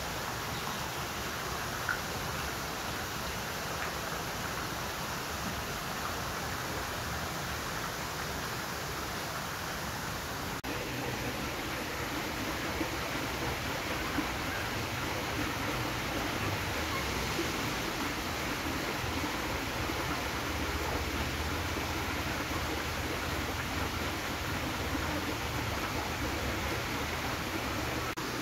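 Steady rush of flowing water, an even hiss with no break. About ten seconds in it drops out for an instant and comes back with a little more low rumble.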